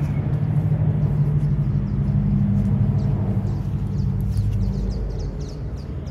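A steady low engine-like hum that weakens after about five seconds, with small birds chirping throughout.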